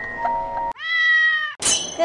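A cartoon-style cat meow sound effect: one long, slightly rising-then-level call lasting under a second. It comes after a short run of steady chime tones and is followed near the end by a brief sharp noise burst.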